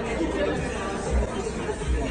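Indistinct chatter of several people talking at once, with a low rumble underneath.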